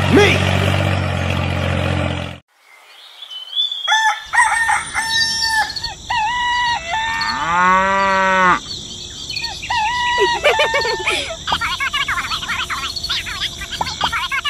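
A steady engine sound that cuts off abruptly about two seconds in, then after a brief pause a run of chicken sounds: hens calling and clucking, a longer rising-and-falling call around the middle, and many quick chirps near the end.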